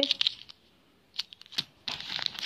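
Coins in small plastic sleeves being handled, with short sharp clicks and crinkles of plastic. There is a brief flurry at the start, a short pause, then a run of separate taps from about a second in.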